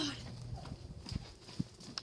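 A few light knocks, about half a second apart, over low handling noise.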